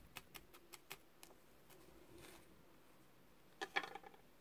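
Faint quick pricks of a felting needle stabbing wool into a burlap-covered pad, about six a second for the first second or so. A brief louder rustle near the end as the burlap pad is handled.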